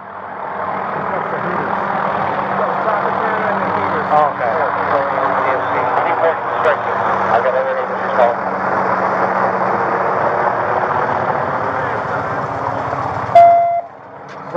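Loud jumble of overlapping, indistinct voices over the steady hum of a running vehicle engine, with a short electronic beep near the end.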